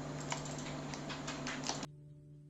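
About half a dozen light, irregular clicks over a steady low hum. Near the end the sound drops suddenly to a faint hiss.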